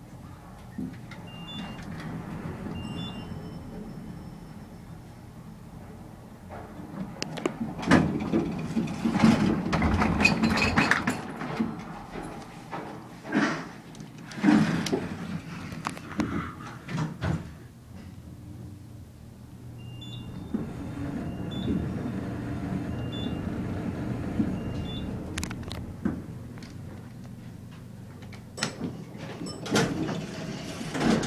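Inside a Fujitec traction elevator car: the low steady hum of the car travelling, with a few short high beeps. In the middle, loud rubbing and knocking as the camera is handled close up.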